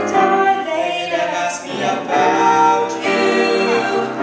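A girl and a boy singing a slow duet into microphones, with long held notes.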